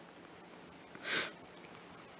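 A single short sniff about a second in, over quiet room tone.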